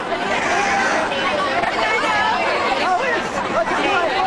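Several people talking and calling out over one another, a continuous chatter of overlapping voices with no single clear speaker.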